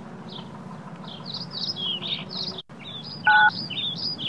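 Small birds chirping busily. Near the end, one loud two-tone mobile-phone keypad beep as the first digit, the 9, of 911 is pressed.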